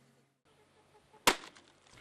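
One sharp chop of a hatchet splitting kindling on a wooden chopping block, a little over a second in; otherwise near silence.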